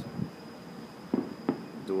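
Distant fireworks going off: a few short, dull bangs spaced irregularly, about four in two seconds.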